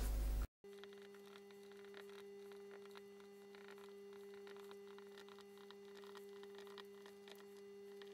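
Faint steady electrical hum of two low, unchanging tones, starting after a short dropout about half a second in.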